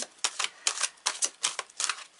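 A deck of tarot cards being shuffled by hand: about eight quick, sharp card snaps and taps at an uneven pace.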